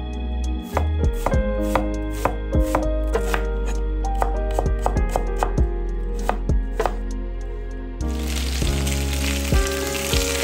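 Chef's knife dicing onion on a wooden cutting board: sharp, irregular chops about two a second. About eight seconds in it gives way to chicken thighs sizzling in hot oil in a frying pan.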